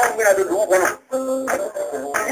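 Music led by a voice singing a wavering, ornamented melody, with a brief break about a second in.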